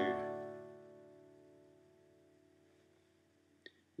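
Steel-string acoustic guitar chord strummed once, ringing and slowly fading for about three and a half seconds, then cut off with a faint click as the strings are damped near the end.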